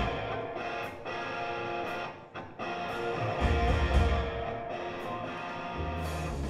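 Live rock band playing, electric guitar to the fore. Heavy bass drops out briefly a little after two seconds and comes back in strongly at about three and a half seconds.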